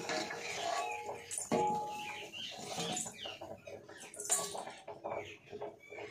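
Small stainless steel bowl handled by a toddler, knocking about. One knock about a second and a half in rings briefly with a thin metallic note.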